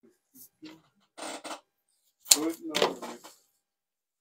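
Brief muttering from a person's voice about two seconds in, with a few faint small handling sounds before it.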